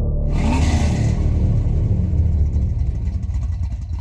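A car engine running low and steady, with a hiss that is strongest in the first second.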